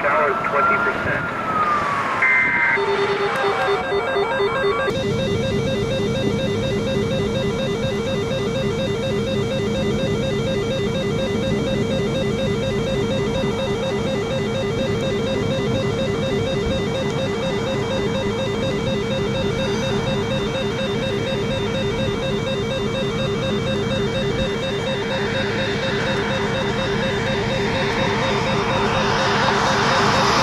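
A siren-like pitch glide rises and falls in the first few seconds. It gives way, about three seconds in, to a steady, rapidly warbling electronic alarm tone that runs on unbroken.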